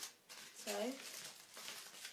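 Aluminium foil crinkling as it is handled and lifted up off the table.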